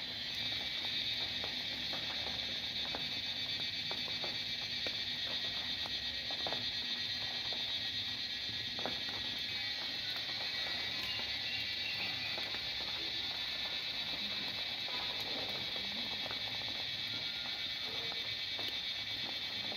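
Cicadas buzzing in a steady, continuous high chorus that swells in at the start, with a few faint scattered clicks beneath it.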